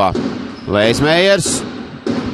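Basketball game sound: a commentator speaking for a moment over steady arena crowd noise, with a basketball bouncing on the court.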